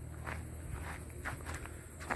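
Faint footsteps of the person filming, a few soft irregular steps on rough ground.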